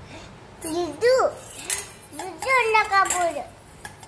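A toddler's high-pitched voice talking and babbling in two short phrases, the second longer, with the pitch sliding up and down. A few light clicks fall in between.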